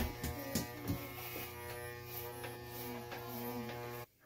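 Corded electric hair clippers buzzing steadily as they cut a child's short hair; the buzz cuts off abruptly at the end as the clippers are switched off.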